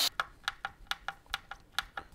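Hand screwdriver driving a small screw into a tweeter's mounting flange on a plywood speaker baffle: about ten light, sharp clicks at uneven spacing over two seconds.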